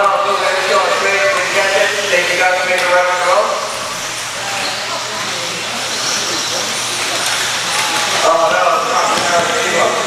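A man talking over a PA in a large, echoing hall, with the high whine and tyre noise of 1/10-scale 2WD electric buggies with 17.5-turn brushless motors racing on the dirt underneath. The voice drops out for a few seconds in the middle, leaving the buggies and the hall din.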